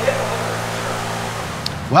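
A steady low mechanical hum with a constant pitch, easing a little near the end.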